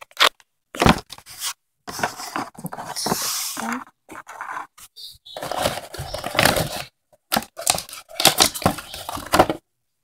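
Toy packaging being torn open and handled, in irregular bursts of ripping and crinkling with short pauses between them.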